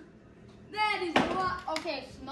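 Quiet at first, then a person's voice calls out without clear words, and a sharp crack sounds a little over a second in, followed by a couple of lighter clicks.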